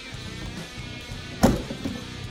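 Background guitar music, with one sharp knock about one and a half seconds in as the portable spray booth's fan holder is handled.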